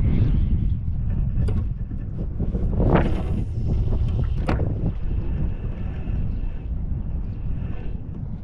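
Wind buffeting the microphone of an action camera mounted on a fishing rod, a steady low rumble, with a swell of whooshing about three seconds in as the rod is swung through a cast. A couple of sharp clicks, one just before and one just after the swing.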